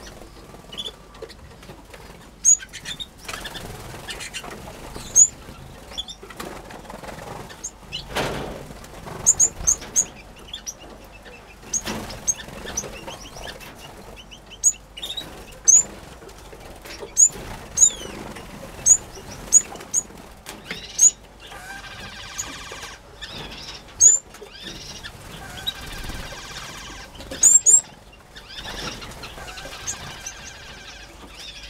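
Aviary finches giving short, high chirps every second or so, with wing flutters as birds fly between perches and nest boxes. About two-thirds of the way through there is a few-seconds run of continuous song.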